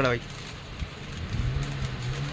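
A man's sentence ends, then a short pause with faint background noise. About a second and a half in comes a low, steady, level voice sound, like a drawn-out hum.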